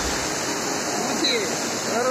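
Steady rush of water flowing fast along a stone-lined canal out of a tunnel, with a thin waterfall splashing down the canal wall.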